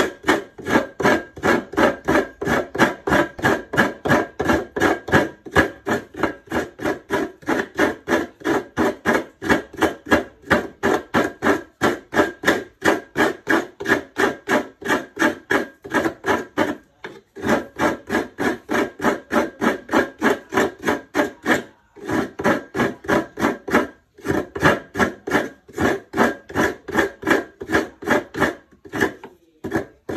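Coconut meat being grated by hand: a coconut half scraped rhythmically against a coconut grater's toothed blade, about four rasping strokes a second, with a few brief pauses and a longer one near the end.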